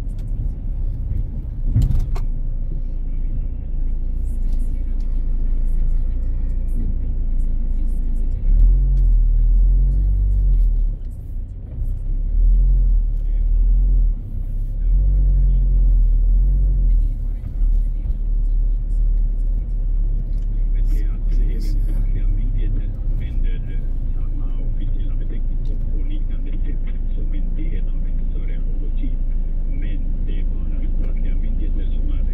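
Low engine and tyre rumble heard inside a car's cabin as it drives slowly off a ferry and across a port, with a single knock about two seconds in and the rumble swelling at times.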